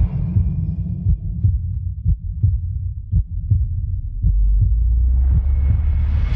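A slow heartbeat sound effect, double thumps about once a second, over a steady low rumble.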